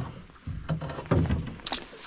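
Irregular knocks and rustling of handling in a small boat as a freshly caught pike is unhooked by hand.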